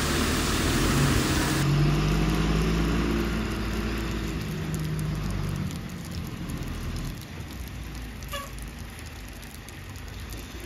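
Tata tipper truck's diesel engine running as the truck drives off, its steady low note fading away after about five seconds.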